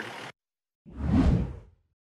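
A single whoosh sound effect of a newscast transition. It swells up and fades away over about a second, with a deep low rumble under it.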